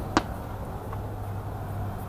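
One sharp metallic click shortly after the start, from locking pliers being handled on a resin 3D-printed bullet mold, with a fainter click about a second in, over a steady low hum.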